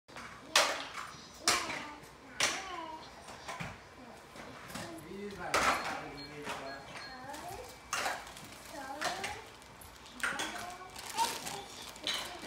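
A toddler babbling in short wordless bursts, with several sharp taps or clatters among them as small hands handle a changing pad.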